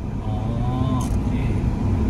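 Steady low engine and tyre rumble of a Mitsubishi car heard inside its cabin as it rolls slowly forward, with a faint voice briefly near the start.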